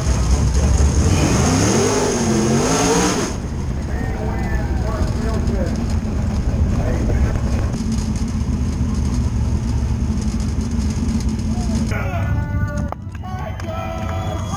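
Dirt super late model race car's V8 engine running hard with its revs rising and falling for about three seconds, then dropping suddenly to a steady idle. Voices shout and cheer around the car.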